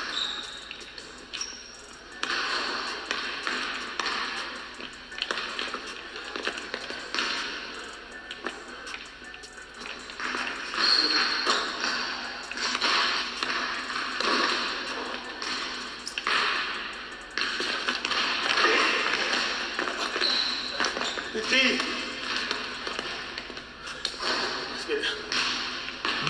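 A basketball being dribbled on a hardwood gym floor, with indistinct voices and background music.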